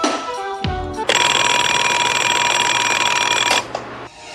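An alarm clock ringing loudly and steadily for about two and a half seconds, starting about a second in and cutting off suddenly, after a short stretch of music.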